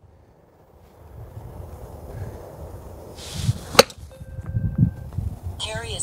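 A golf club strikes a ball off a synthetic hitting mat on a chip shot: a brief swish, then one sharp click at impact about four seconds in. A low wind rumble on the microphone sits underneath.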